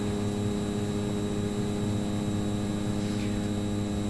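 Steady electrical hum, a constant buzz made of many evenly spaced tones that holds at an even level throughout.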